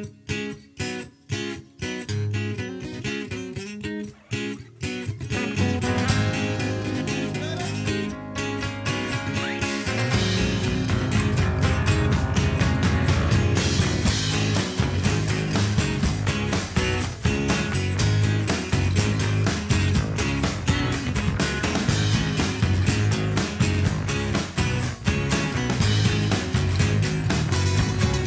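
An acoustic rock band plays a song's intro on acoustic guitars. For the first five seconds the guitars strike short chords with silent gaps, then they play on without a break. About ten seconds in, the full band comes in with a heavier low end.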